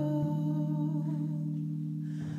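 Live folk band music in a slow, sustained passage: a low chord is held steadily, with a soft, slightly wavering melody line above it.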